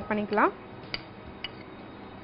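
A spoon clicking twice against a bowl, about half a second apart, as sliced green chillies are scraped from one bowl into another.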